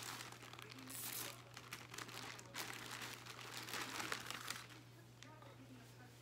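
Rustling and crinkling as a garment is handled and unfolded, in several short bursts that die down about four and a half seconds in.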